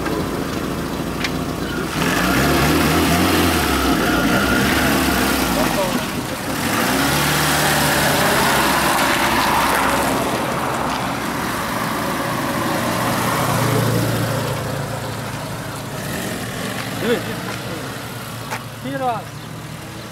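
A Lada VAZ-2110 sedan's engine revving up and pulling away over a gravel verge, its pitch climbing in several steps as it accelerates through the gears, with tyre and road noise. It grows quieter as the car moves off.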